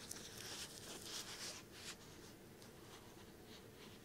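Soft, scratchy rubbing and rustling right up against the microphone, as in close-up ASMR ear cleaning, for about the first two seconds, followed by a few faint light ticks.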